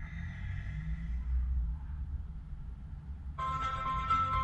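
Low, steady rumble of a car idling while stopped, heard from inside the cabin. Music starts abruptly near the end.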